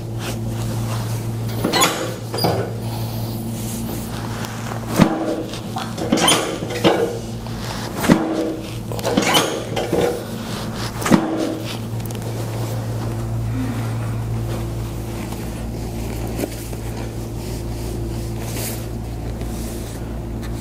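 A series of sharp clunks from a chiropractic adjustment of the pelvis and lower back on a sectioned chiropractic table, about eight in the first eleven seconds, over a steady low hum.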